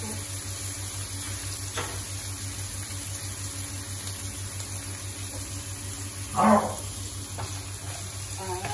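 Diced pork frying and sizzling in a nonstick wok as a wooden spatula stirs it, over a steady low hum. There is a click about two seconds in and a short, louder sound about six and a half seconds in.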